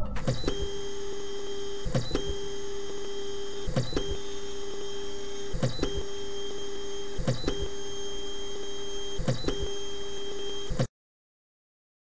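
3D printer stepper motors whining steadily as the print head travels, with a brief click-like break about every two seconds. The whine cuts off suddenly near the end.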